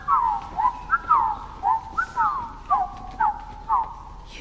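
Rhythmic whistle-like chirping: short swooping notes, falling and rising in quick pairs about twice a second, over a faint steady high tone.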